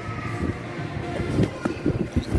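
Dull, irregular thumps of bouncing on a trampoline bed, mixed with rubbing and knocking from a handheld camera being swung around.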